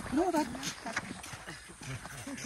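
A person's brief wordless voice: a short hum that rises and falls about a quarter second in, followed by a few fainter murmurs.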